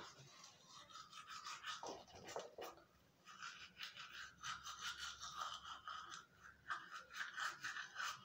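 Toothbrush scrubbing teeth in quick, faint back-and-forth strokes, thickening into a steady run of brushing about halfway through.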